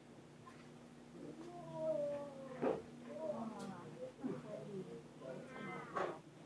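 Several high, whining vocal calls that slide and fall in pitch, starting about a second in, over a steady low hum.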